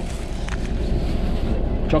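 Steady low rumble of a van's cabin: engine and road noise heard from inside the vehicle.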